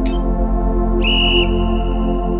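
Workout interval timer signalling the start of the next exercise: a short countdown beep at the start, then about a second in a longer high, whistle-like start tone that trails off more faintly, over steady background music.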